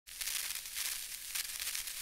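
Crackling static-noise glitch sound effect: a high, hissing crackle that flickers in loudness.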